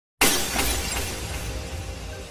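Glass-shattering sound effect that hits suddenly a moment in, with a low rumble beneath it, and fades over the next second or so into intro music.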